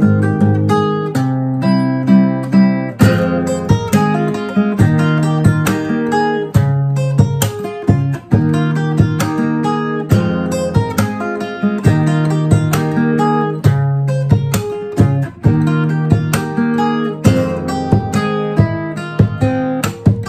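A solo cutaway acoustic guitar played with the fingers: chords strummed and plucked in a steady rhythm, with the notes ringing between attacks.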